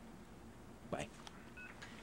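A mobile phone giving a short electronic beep, two brief tones at different pitches near the end, as a call is ended. A faint short noise of the handset being moved comes about a second in.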